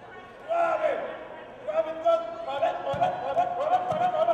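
A man's voice vocalizing in long, drawn-out wavering notes, with two short low thumps in the second half.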